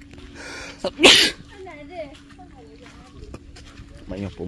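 A person sneezing once, about a second in: a short breathy lead-in, then one loud, sharp burst.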